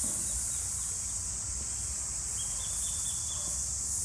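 Steady, high-pitched chorus of insects, with a low rumble underneath and a brief thin tone a little past halfway.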